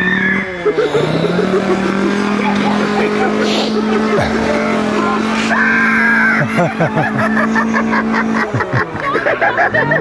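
A small engine is revved up about a second in, held at high revs for several seconds, then let drop near the end, with voices over it.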